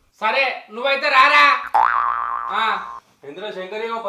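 Speech, broken about two seconds in by a short comic 'boing' sound effect: a tone that rises sharply and then holds level for under a second.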